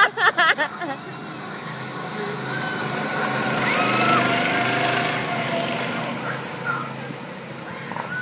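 Go-kart engine passing on the track: its hum and tyre hiss swell to a peak about four seconds in, then fade away. Brief excited voices at the very start.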